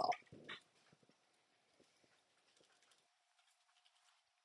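A man's voice ends a word in the first half second, then near silence with a few faint, widely spaced ticks and a faint steady hum.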